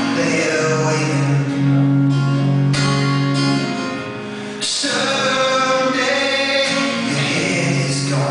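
Male singer singing live while playing an acoustic guitar. About four seconds in the music eases off for a moment, then comes back in strongly.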